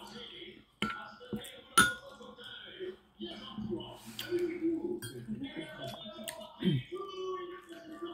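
Cutlery clinking against a ceramic dinner plate a few times during a meal, the sharpest clink about two seconds in, over voices from a television.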